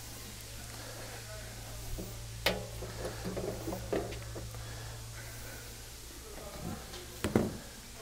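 A plastic water heater access door on a travel trailer's side being unlatched and opened: a few light clicks and knocks over a steady low hum.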